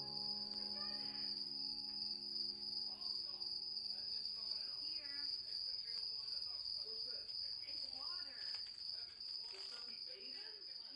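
Steady high-pitched trill of a cricket running throughout. A few held musical notes die away in the first half, and faint rustling from handling comes in the second half.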